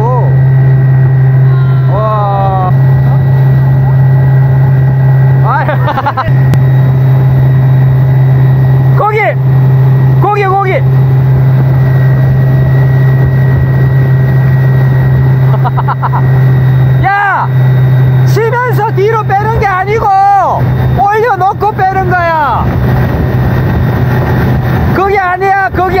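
Wakeboard tow boat's engine running steadily at towing speed, a loud constant drone. Voices aboard call out now and then over it, most busily in the last third.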